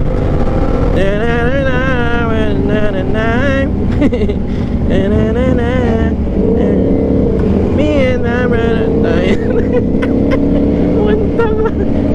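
Aprilia RS660 parallel-twin engine running under way at road speed, with wind rushing past the microphone.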